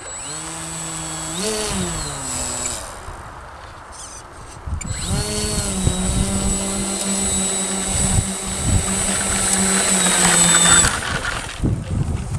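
Electric motor and propeller of a HobbyZone Glasair Sportsman S RC plane taxiing on grass. A short burst of throttle rises and falls in pitch over the first three seconds. After a pause, a steadier run of about six seconds with a high whine above it cuts off about a second before the end.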